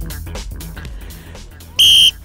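Music fading out, then near the end one short, loud blast on a metal whistle: a steady, shrill single note.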